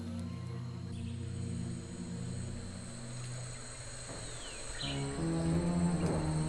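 Slow background music of sustained low held notes, moving to a new chord about five seconds in, over a faint ambience with a steady high insect-like hum.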